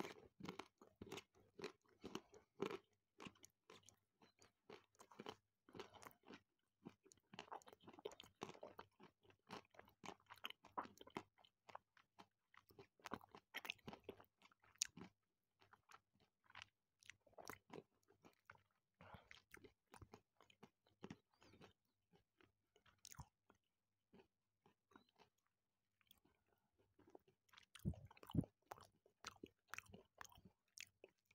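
Close-miked chewing of milk chocolate with whole hazelnuts and almonds: quiet, wet mouth sounds with small crunches as the nuts break, the steady run of clicks easing off for a few seconds after the twentieth second and picking up again near the end.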